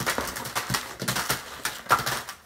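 Plastic candy packets rustling and crinkling against each other in a cardboard box as it is handled and shaken, with a loud sharp crackle just before the end.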